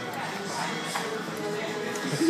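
Background music with indistinct voices in the room; no clear foreground sound.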